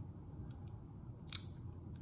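Quiet room tone with a low hum and a faint, steady high-pitched whine, broken by a few faint ticks and one sharp click a little past halfway.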